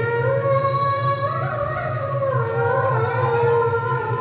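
Music with a singer holding long notes that slide from one pitch to the next.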